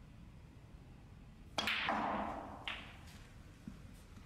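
A snooker shot: the cue tip strikes the cue ball, which rolls across the cloth for about a second and clicks sharply into a red. A soft thud near the end is the red dropping into a pocket.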